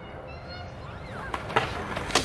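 BMX bike tyres rolling over skatepark concrete, a low rumble growing louder as the bike approaches, with a few sharp clicks in the second half.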